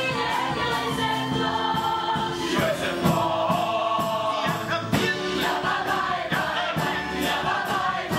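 Musical-theatre ensemble singing a lively number in chorus, with instrumental accompaniment keeping a steady beat of about two strokes a second.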